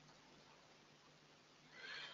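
Near silence: room tone, with a faint short hiss near the end.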